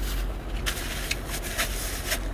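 Steady low rumble of road and engine noise inside a car's cabin, with a few short crinkles of paper being handled.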